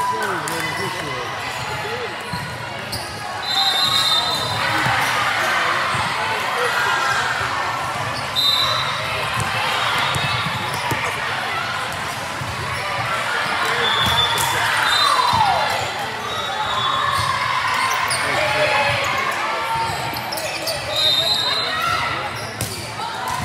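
Sound of a volleyball match in a large echoing gym: voices of players and spectators, irregular ball hits and thuds on the court, and a few short high-pitched tones.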